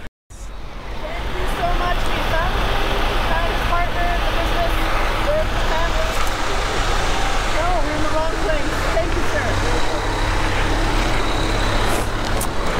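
Isuzu Grafter cage-tipper truck's diesel engine running as the truck creeps up the lane and pulls alongside, a steady low hum. It starts abruptly after a brief moment of silence at the very start.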